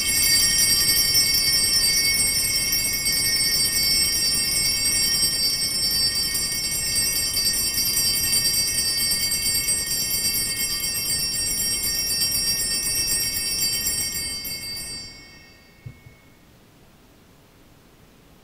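Altar bells (sanctus bells) rung continuously for about fifteen seconds and then dying away, a shimmer of many high bell tones; the ringing marks the elevation of the chalice at the consecration of the Mass.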